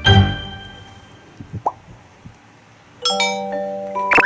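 Playful sound effects added in editing: a thump with ringing, chime-like tones at the start that fades away, then a bright jingle with held bell-like notes coming in about three seconds in. A faint short squeak sounds in the quiet stretch between them.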